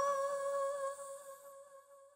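The song's last held note: a single steady tone with a few overtones, fading away over the second half to near silence.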